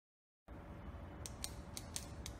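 Intro sound effect for an animated title: a low rumble that starts about half a second in, with four sharp clicks, about four a second, from a little past a second.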